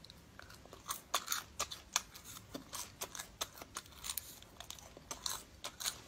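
A person chewing cooked cicada nymphs, the crisp shells crunching in an irregular run of small crackles, several a second.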